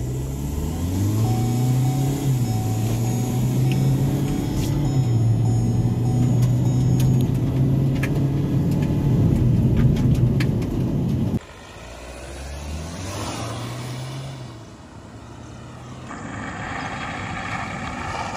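Hyundai Verna automatic accelerating hard from a standstill, heard inside the cabin: the engine revs climb and drop back as the gearbox upshifts. About eleven seconds in the sound cuts off abruptly to a quieter engine note.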